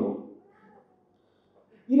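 A man's voice trails off just after the start, then near silence for about a second and a half before his speech resumes near the end.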